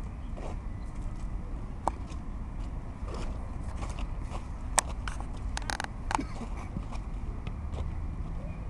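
Outdoor ambience beside a football pitch in play: a steady low rumble with scattered faint, distant knocks, and one sharp click a little before the five-second mark.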